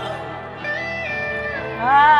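Live band music playing: guitar with held notes that slide from pitch to pitch, then a loud voice swelling in near the end.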